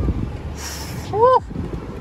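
Low, steady engine and road drone heard inside the cabin of a 2021 BMW M4 Competition, its twin-turbo straight-six driving at street speed. About halfway through, a breathy rush is followed by a short, loud 'ooh'-like vocal exclamation.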